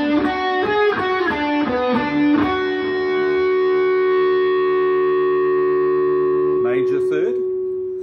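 PRS electric guitar played through an amp: a quick run of single notes for about two and a half seconds, then one note left ringing with long sustain, fading slowly near the end.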